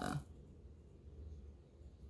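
A woman's voice trailing off on a drawn-out word at the very start, then near silence with a faint low hum of room tone.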